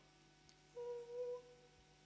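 A woman's voice humming one soft, short held note with a slight waver, lasting well under a second, in an otherwise quiet pause between violin phrases.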